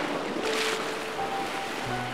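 Sea waves washing onto the shore, a steady surf with a swell about half a second in, under a few soft held music notes.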